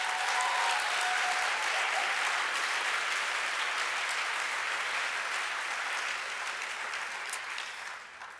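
A large audience applauding, a steady clapping that slowly dies away toward the end.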